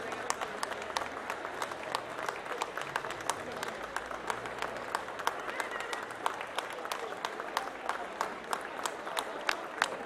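Audience applauding steadily, with many individual hand claps standing out.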